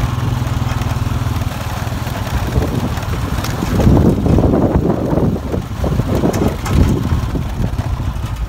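Honda ATV engine running at low, steady speed, then louder and uneven from about halfway through as the quad rides over rough, snowy ground.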